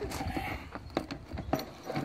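A hard-shell GIVI motorcycle tank bag being handled and pressed down onto its quick-release mount on the fuel tank, with a few light knocks and clicks and rustling.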